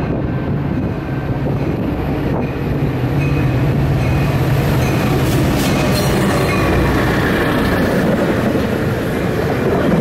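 An EMD F40PHM diesel locomotive slows into a station stop. Its steady low engine drone grows louder about three seconds in as it passes close by, and then bilevel passenger cars roll past with wheel-on-rail rumble. A brief high squeal comes about five to six seconds in.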